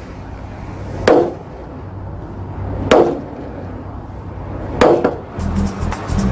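A mallet striking a soy-based plastic vehicle body panel three times, about two seconds apart, each blow a sharp knock with a short ring. Music comes in near the end.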